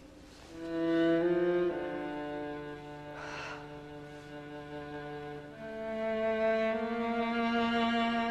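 Bowed strings, cello and violin, playing slow held chords that change a few times.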